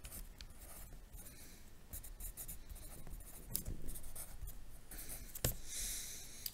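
Handwriting on lined notebook paper: faint, irregular scratching strokes of the writing tip as numbers and a percent sign are written, with a few light ticks.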